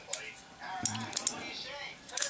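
A few sharp metallic clicks and clinks from an old postal counter padlock being handled.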